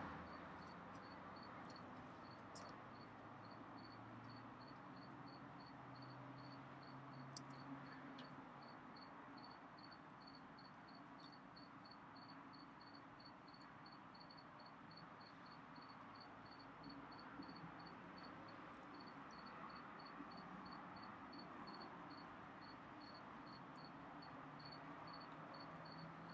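Near silence, with one insect chirping faintly and steadily, about two high-pitched chirps a second.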